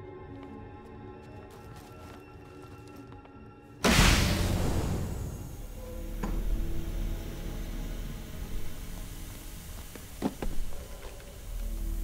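Tense film score of sustained tones; about four seconds in, a sudden loud hit gives way to a low rumbling drone, with a few short knocks later on.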